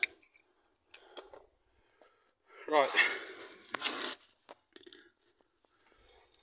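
Light metal clicks and clinks from handling the rear brake caliper and its parts, with a short noisy rustle about three seconds in.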